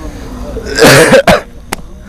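A harsh, cough-like vocal burst about a second in, followed by a sharp click.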